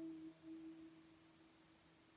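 A note on a nylon-string classical guitar ringing on after being plucked and fading away to near silence, a single steady pitch dying out over about a second and a half.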